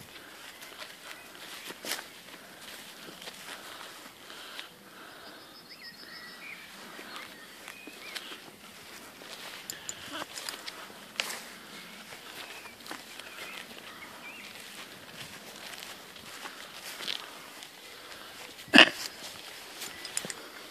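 Faint footsteps and rustling through grass as a horse is walked across a field, with scattered soft clicks. One loud short thump comes about a second before the end.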